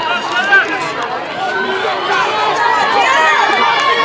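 Spectators yelling and cheering for sprinters mid-race, many loud voices overlapping with no single speaker standing out.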